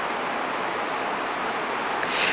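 Steady hiss: the recording's background noise floor, even and unchanging, with nothing else heard.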